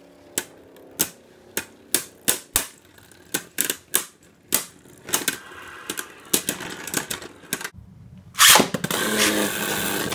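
Two Beyblade Burst tops clashing again and again on a plastic stadium floor: sharp clacks about every half second that come faster as the battle goes on. About eight and a half seconds in there is one loud crack as one top is knocked out, followed by a denser rattling.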